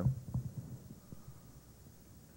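A man's voice finishing a word, then a few faint low knocks and quiet room tone.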